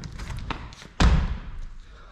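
Feet landing hard with a single heavy thud about a second in, at the end of a devil drop: a backward flip off a handle on a climbing wall.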